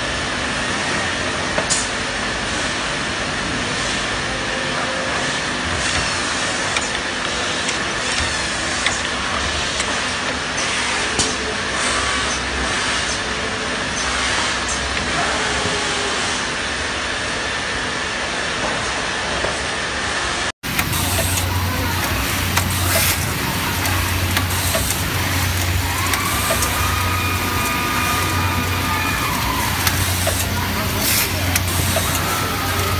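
Factory assembly-line noise: a steady mechanical din with scattered sharp clicks from automatic screwdriving robots and their fixtures. A sudden cut comes about two-thirds through, after which a deeper steady hum sets in, with a brief whine near the end.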